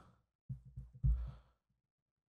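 A man's breathy sigh close to the microphone, starting about half a second in and lasting about a second.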